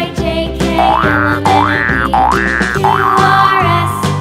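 Children's background music with a steady bass line. Through the middle, a sound swoops up and down in pitch three times, like a cartoon boing or slide-whistle effect, then holds a higher note.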